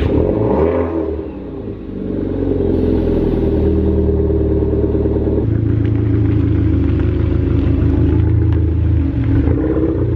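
A Volkswagen Scirocco's engine just after start-up. Its pitch sweeps down over the first second or two, then it idles steadily.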